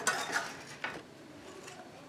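Kitchen utensils clinking and knocking against cookware: three short knocks in the first second, then softer handling sounds.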